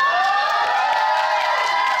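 Concert audience cheering: several voices in a high, held shout that rises at the start, with some scattered clapping.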